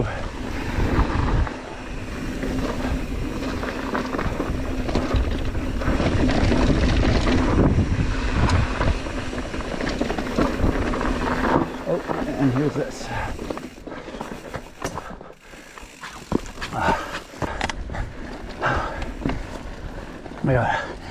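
Mountain bike riding fast down a loose, rocky dirt trail, heard from a camera mounted on the rider or bike: wind on the microphone, tyres rolling over dirt and rocks, and the bike rattling. The noise eases about three-quarters of the way through as the bike slows, and the rider's voice or breathing comes through near the end.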